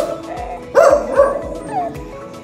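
A dog barking in short, high yips, one right at the start and two quick ones about a second in, each rising and falling in pitch. Background music with a steady beat plays underneath.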